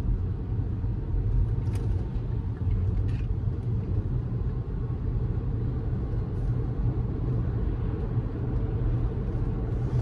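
Steady road and tyre noise with a low rumble, heard inside the cabin of a Tesla Model S electric car cruising on a highway.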